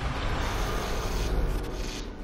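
A film soundtrack sound effect: a steady, rough rushing noise over a low rumble. It starts abruptly just before and fades a little near the end.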